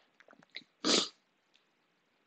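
One short, sharp breath-sound from a man about a second in, a quick huff of air through the mouth and nose, while he is still feeling the burn of a freshly eaten superhot Dorset Naga pepper.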